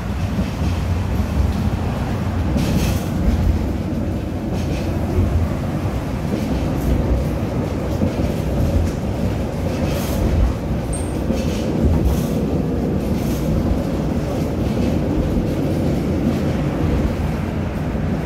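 Tram running along its track, heard from inside the passenger car: a steady low rumble with sharp wheel clacks on the rails every second or so, at uneven spacing.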